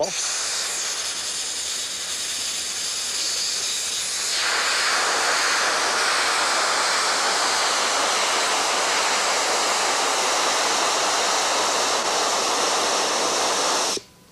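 Compressed-air hose nozzle blowing a steady hissing jet of air, holding a golf ball suspended in the stream. The hiss grows louder and fuller about four seconds in and cuts off abruptly at the end.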